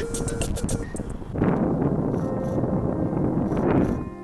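A rushing, wind-like noise that swells for about two and a half seconds and breaks off suddenly at the end, over faint background music.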